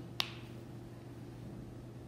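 A single sharp click about a fifth of a second in, over a steady low hum of room tone.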